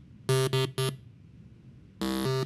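Bank of pneumatic solenoid valves buzzing out a tune: three short buzzy notes at the same low pitch in quick succession, then a pause of about a second.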